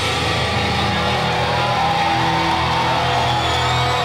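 Heavy metal band playing live: long held guitar notes under a slowly rising and falling melody line, with a crowd cheering.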